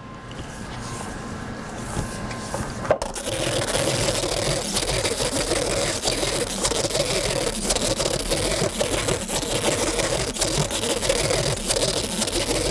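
Roll laminator running, its rollers drawing printed sign sheets and laminating film through. It becomes a louder, steady mechanical whir with many fine ticks about three seconds in.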